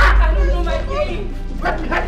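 Dialogue over background film music: a voice speaking in short phrases above a steady low-pitched musical bed.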